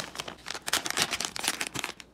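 A plastic pouch crinkling and crackling irregularly as it is handled and opened.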